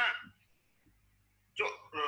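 Only speech: a man's voice says a short word, then there is about a second of near silence before he speaks again near the end.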